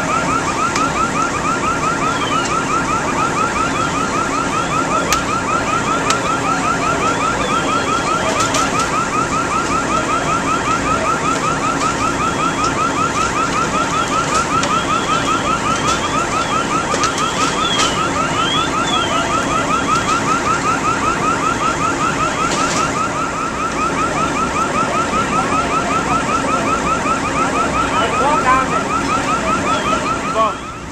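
An electronic alarm sounding without a break in a fast, even warble, over a steady low hum.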